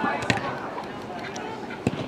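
Two sharp thumps of a soccer ball being kicked, about a second and a half apart, the second one louder, over faint voices.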